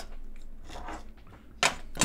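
Quiet chewing of a fried slice of pork loaf, with a short louder sound about a second and a half in.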